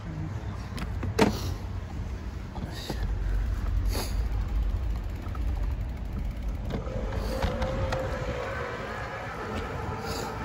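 Riding an electric-assist bicycle on a city street: low wind rumble on the microphone builds once the bike gets moving, with a sharp click about a second in and lighter rattling knocks soon after. A faint, slightly wavering whine comes in near the seven-second mark.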